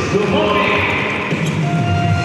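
Basketball arena crowd cheering and shouting right after a made basket, a loud, steady mass of voices.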